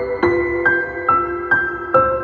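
Slow, gentle piano music: single notes struck about every half second, each left ringing into the next.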